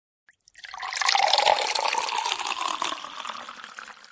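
Logo-intro sound effect: a rushing noise full of fine crackle that swells in about half a second in, peaks soon after and fades away near the end.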